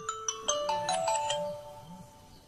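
Smartphone alarm ringtone playing a quick run of bright, chime-like notes, fading after about a second and a half.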